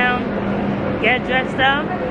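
A woman's voice, in short bursts with strongly rising and falling pitch, over a steady low hum and background noise.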